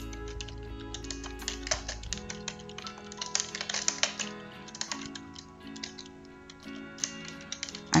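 Typing on a computer keyboard, an irregular run of key clicks, over soft background music.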